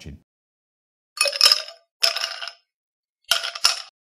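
Edited-in transition sound effect under a title-card graphic: three short bursts of clinking, the first two close together about a second in and the third near the end.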